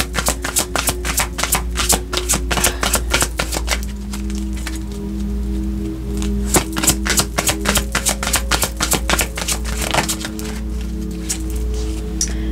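A deck of tarot cards being shuffled by hand: rapid runs of small card clicks that thin out in places, over soft background music with held low notes.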